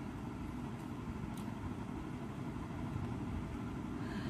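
Steady, faint low background rumble, with no clear event in it apart from a faint tick about a second and a half in.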